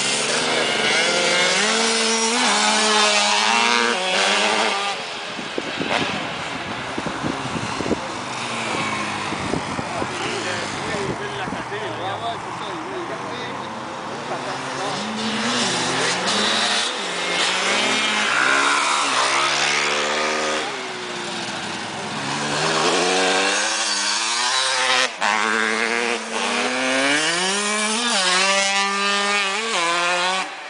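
Dirt bike engines revving and accelerating, their pitch climbing and dropping back again and again as they ride past.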